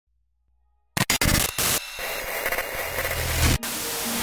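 Analog television static: after about a second of silence it starts suddenly in broken bursts of hiss, then settles into a steady crackling hiss with a low rumble beneath, and cuts off abruptly just before the end.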